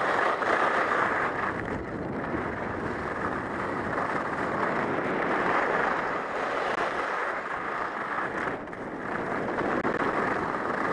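Steady rushing of wind over the microphone of a helmet-mounted camera during a downhill ski run, mixed with the hiss of skis sliding on groomed snow. It swells and eases slightly with speed and turns.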